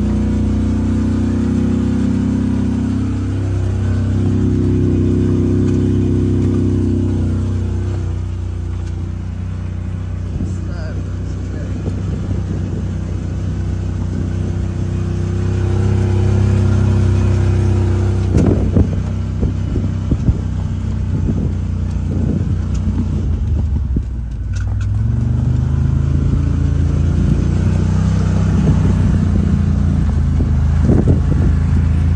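Side-by-side UTV engine running while driving a rough dirt trail, its note rising and falling with the throttle. Knocks and rattles from the cab over bumps, clustered about two-thirds of the way through.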